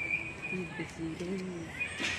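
Faint, distant voices, with a thin, steady high tone in the first part that stops a little under a second in.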